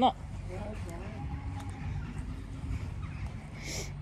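Steady low hum of machinery from a nearby feed plant, with a faint drawn-out cow moo in the first half and a short crow caw near the end.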